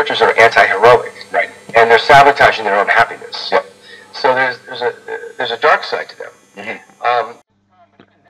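Speech from a radio broadcast coming out of the Becker Mexico car radio's loudspeaker, the set running on a 13.5 V supply.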